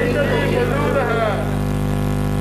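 A single voice calling out, stopping about a second and a half in, over a steady electrical hum from the sound system.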